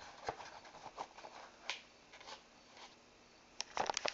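Cardboard VHS sleeve rustling and a plastic cassette being slid out of it, with scattered light clicks and scrapes. A burst of louder knocks and rustling comes near the end.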